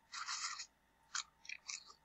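A short crunchy rustle, then a few quick sharp clicks of a computer mouse.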